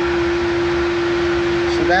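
Steady machine hum: one constant tone held over an even hiss, unchanging throughout.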